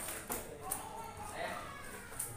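Indistinct voices talking in the background, with a few light clicks.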